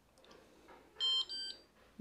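Dishwasher control panel sounding its power-on signal: two short electronic beeps in quick succession, the second quieter.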